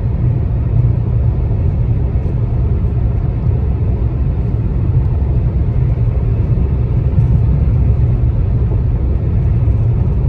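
Car cruising at highway speed heard from inside the cabin: a steady low rumble of tyre, road and engine noise.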